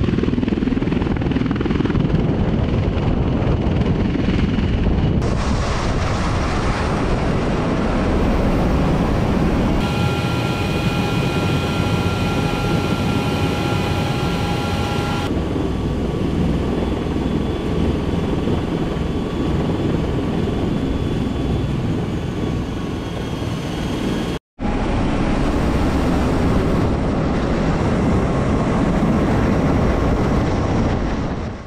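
MV-22 Osprey tiltrotor's engines and proprotors running as a loud, steady rumble, with a steady whine for a few seconds midway. The sound is cut short once near the end.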